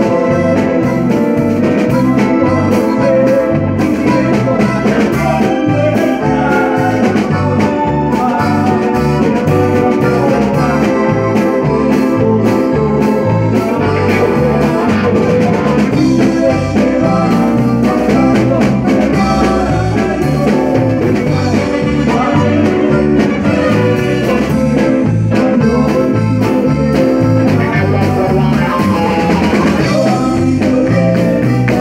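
Live band playing an upbeat song with a steady beat, with keyboard and guitar among the instruments.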